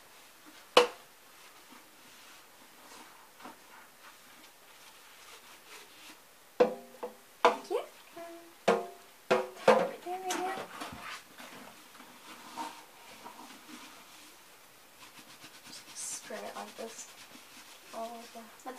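Dishwashing noises at a stainless steel kitchen sink: a sharp knock about a second in, then a run of knocks and short ringing notes around the middle, and a brief hiss near the end.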